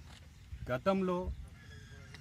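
A man speaking one short phrase, with a faint, high, steady tone sounding near the end.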